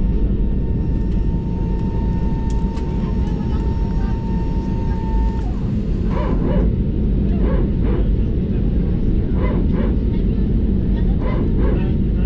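Steady low rumble of an Airbus A320 cabin during taxi, with a thin steady whine that stops about five seconds in. In the second half come short, irregular bursts over the rumble.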